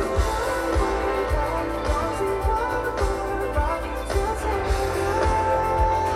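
Live pop-rock band playing through a PA: electric guitar, bass guitar, keyboard and a steady drum beat, with a male lead vocal.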